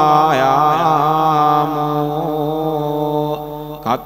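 Buddhist pirith chanting in Pali by a single voice. The voice wavers over the first second, holds one long drawn-out note, then breaks off briefly near the end.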